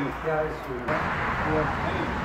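Indistinct talk and murmur from a small group of people, with no clear words. About a second in, the background changes abruptly to a steadier, noisier hiss of faint voices.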